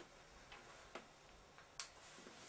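Near silence: quiet room tone broken by four faint, short clicks at uneven intervals, the last and loudest near the end.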